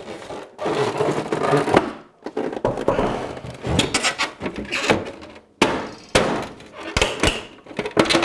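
Rigid plastic casing of an iMac G3 creaking, scraping and knocking as the rear housing is worked free of the front bezel, with several sharp snaps in the second half.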